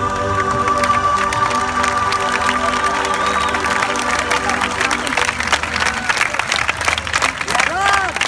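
A song ends on held notes that fade out about halfway through, while an audience's applause and cheering builds and takes over, with dancers clapping along.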